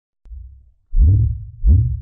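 Deep, low booming hits of an intro sound effect, like a heartbeat: a faint one near the start, then two loud ones about three-quarters of a second apart, each with a short rising swoosh.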